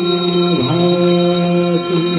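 Devotional aarti chant to Shiva: a voice holds long sung notes, dipping in pitch about half a second in, over continuous ringing of bells.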